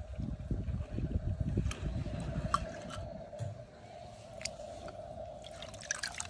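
Water dripping and sloshing as wet die-cast toy cars are handled and lifted out of the water, with a few small clicks.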